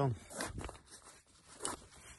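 A few short rustling and scraping sounds of a camper moving about inside a tent and getting his boots on, one about half a second in and another near the end.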